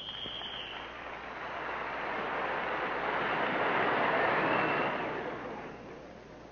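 Circus arena audience applauding. The applause swells to a peak about four seconds in, then dies away.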